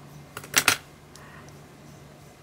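Baked polymer clay necklace tiles strung on wire clicking lightly against each other as the piece is handled: three quick clicks about half a second in.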